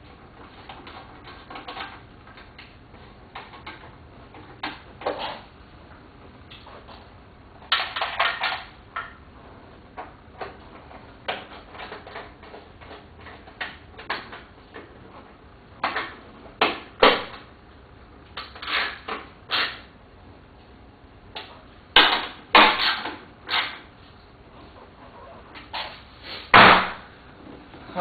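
Irregular metallic clicks, clinks and knocks of hand tools and hardware against the bare sheet-metal inner shell of a Pontiac Fiero door, in small clusters, with one louder knock near the end.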